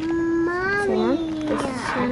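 A person's voice holding one long, steady hummed note for nearly two seconds, with a short bit of another voice over it near the middle.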